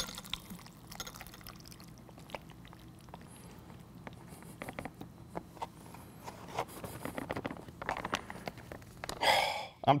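Rehydrated pasta tipped and shaken out of a foil-lined freeze-dried meal pouch into a ceramic bowl: soft pouch rustling with small clicks and wet plops of food landing, and a louder burst near the end.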